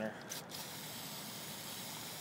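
Aerosol can of carburetor cleaner spraying a dirty carburetor float needle in one steady hiss. The hiss starts about half a second in.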